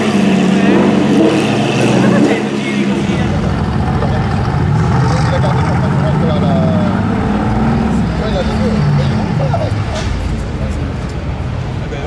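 A Lamborghini Aventador SV's V12 running at low revs for the first few seconds, then a second, deeper and rougher-sounding engine from a track-style sports car idling and blipping after an abrupt change in the sound. Onlookers' voices murmur underneath.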